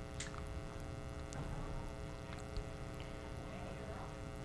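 Low steady electrical hum with faint small ticks and trickling as liquid jello is poured from a glass measuring cup into a silicone mold.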